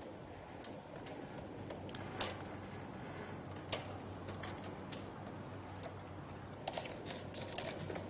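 Light plastic clicks and taps as a mini-split indoor unit's louvers are handled and fitted back into place by hand, a few scattered and a quicker run near the end, over a faint steady low hum.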